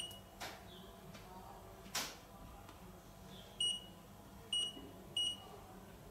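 KomShine KPM-25M handheld optical power meter beeping as its keys are pressed: one short high beep at the start, then three more in quick succession near the end. Faint clicks of the keys and handling come in between.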